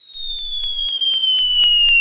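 A cartoon falling-whistle sound effect: one whistle gliding slowly down in pitch, with a steady crackle of about five clicks a second under it. It swells over the first half second.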